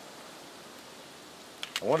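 Faint steady background hiss with no shots, then a man begins speaking near the end.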